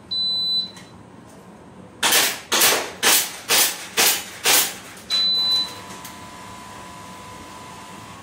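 A high electronic start beep. About two seconds later come six sharp cracks about half a second apart: airsoft pistol shots knocking down the steel target plates. At about five seconds a second high beep signals the end of the timed string, followed by a fainter steady lower tone.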